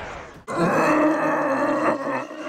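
A giant elephant-like cartoon beast giving a long, low groan, starting about half a second in, as it is overpowered.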